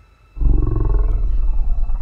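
A film dinosaur's roar that bursts in suddenly about half a second in: a loud, low roar that carries on through the rest.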